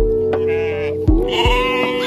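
Background music with a steady beat, and a goat bleating twice over it: a short wavering call about half a second in and a longer one near the end.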